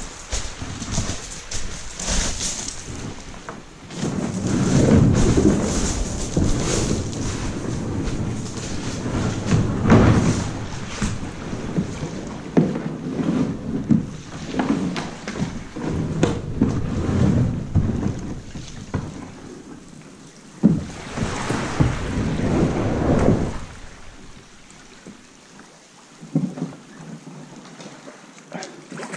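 Plastic sit-on-top kayak hull grinding and scraping over beach pebbles as it is pushed down into the sea, in several loud rough spells. Near the end it goes much quieter once the kayak floats free.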